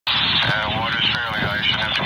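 Radio voice traffic heard through a scanner, a person talking continuously in a thin, narrow-band, tinny voice.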